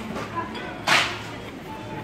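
A cardboard product box sliding or scraping against other boxes: one quick swish about a second in, then the low background of the shop.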